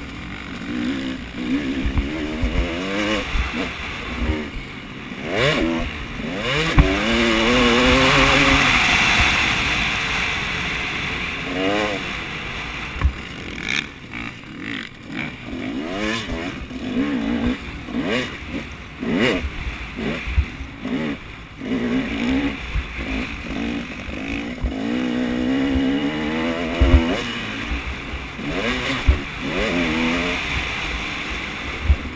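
Motocross dirt bike engine heard from the rider's helmet, revving up and dropping back again and again as he works through corners and straights. Wind rushes across the microphone, loudest about eight to ten seconds in, and sharp knocks come through every few seconds.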